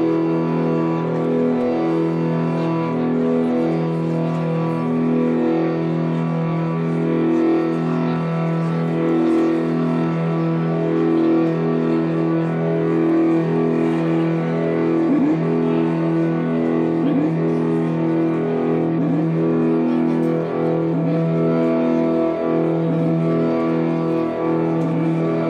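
Live ambient drone music: layered sustained low tones that swell and fade in a slow, even pulse, built on long-held chords. From about fifteen seconds in, short tones that slide down in pitch recur about every two seconds over the drone.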